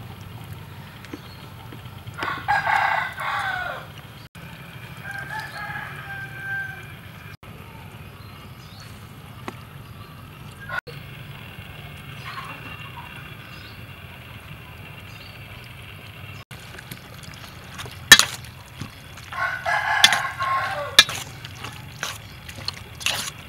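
A rooster crowing twice, once about two seconds in and again near the end, each crow about a second and a half long, with a fainter call in between. A steady low hum runs underneath, and a few sharp clicks come near the end.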